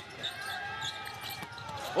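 Court sound of a live basketball game: the ball bouncing and sneakers squeaking on the hardwood, over steady arena crowd noise.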